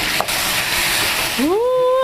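Diced meat, peppers and freshly added chopped tomato sizzling in a hot pan while a wooden spatula stirs it, with one short click. About one and a half seconds in, a voice cuts in with a rising, then held "ooo".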